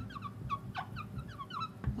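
Marker pen squeaking on a glass lightboard while a word is written: a quick run of short, high squeaks, each sliding down in pitch.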